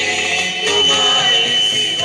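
Singing through a microphone and PA over music, with a high note held steady.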